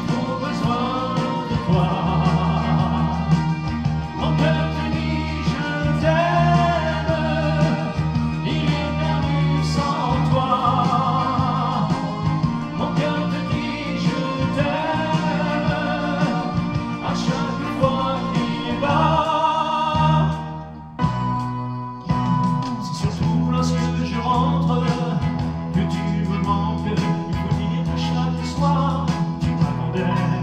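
A man singing in French into a handheld microphone over recorded backing music, his voice held in long notes with vibrato. The backing and voice drop out briefly about two-thirds of the way through, then carry on.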